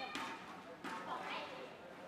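Badminton hall between rallies: indistinct voices from players and crowd, with two sharp taps about three-quarters of a second apart.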